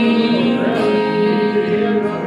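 Live music from an acoustic guitar and an electric guitar playing together, with a man singing and holding one long note.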